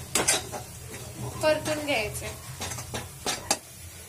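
Flat steel spatula scraping and clinking against a kadhai while stirring a thick masala paste as it fries, with a low sizzle. Sharp clinks come near the start and again about three and a half seconds in.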